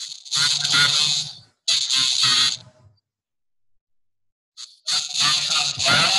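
A man's voice over a video-call connection, harsh and garbled so that no words come through, in three bursts with a pause of about two seconds before the last.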